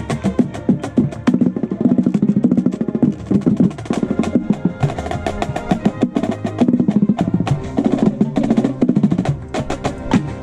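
Drum corps drumline playing a fast passage, the tuned marching bass drums loudest close up, with rapid snare strokes and rolls, under sustained brass chords.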